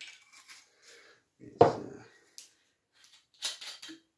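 A glass bottle and glassware being handled on a table: one sharp knock about a second and a half in, with faint clinks and scrapes around it, the bottle of gin being picked up to pour.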